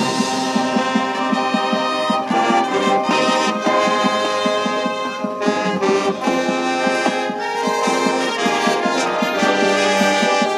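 School marching band playing its field show: the brass section holds full chords over percussion strokes.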